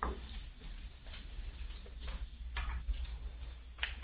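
Steady low electrical hum on a telephone conference line, with a few faint clicks scattered through it.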